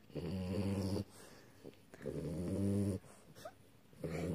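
French bulldog snoring in its sleep: two low, steady snores of about a second each, about two seconds apart. This kind of snoring is typical of the breed's short, flat-faced airway.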